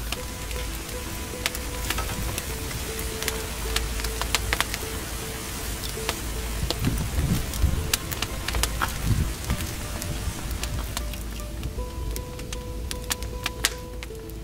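Soft background music with steady held notes, over a wood fire in a brick pizza oven crackling with irregular sharp pops as freshly added logs catch.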